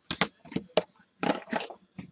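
Handling of a trading card in its plastic holder and a small card box: a quick series of crackles and clicks.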